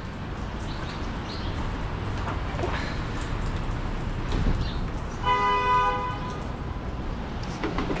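A car horn sounds once, a steady tone of about a second, roughly five seconds in, over a steady low background rumble.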